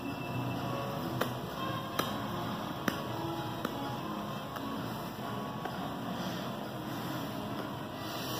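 Tobacco pipe being puffed alight with a match: a few soft clicking puffs on the stem about a second apart in the first half, over faint background music.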